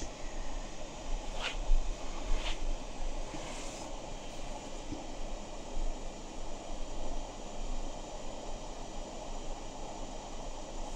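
Steady background room noise with a low hum, and two faint short ticks or scratches about a second and a half and two and a half seconds in.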